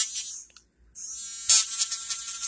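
Small motor of a BellaHoot pen-style electric nail drill whining at a steady high pitch as its small grinding cone files the corners of an acrylic nail tip. It cuts out about half a second in and starts again about a second in, with a brief louder burst about one and a half seconds in.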